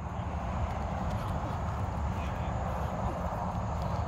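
Steady low rumble and hiss of outdoor background noise, with no distinct separate sound standing out.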